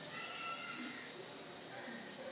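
Chalk drawing on a blackboard, with a short high-pitched squeak of the chalk near the start, lasting about half a second.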